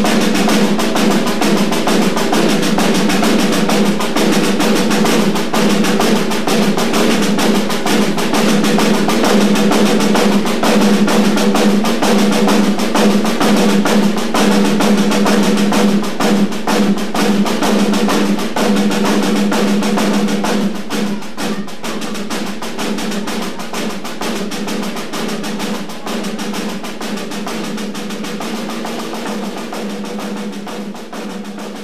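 Snare drum duet: two snare drums played in a dense run of fast strokes and rolls over a steady drum ring. It grows gradually quieter from about two-thirds of the way through.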